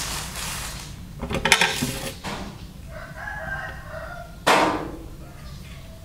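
Plastic mailer bag crinkling and rustling as it is handled. A drawn-out rooster crow follows in the background for over a second, then a sharp knock as the package is set down on the glass table.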